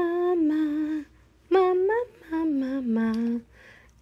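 A woman humming a short sing-song tune in three brief phrases, her pitch stepping up and down note by note.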